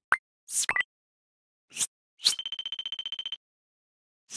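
Sound effects for an animated logo: a sharp click, then a few quick swooshes, then a rapid string of high electronic beeps lasting about a second.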